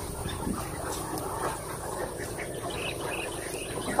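A large flock of domestic ducks (itik) calling faintly and steadily, with wind rumbling on the microphone.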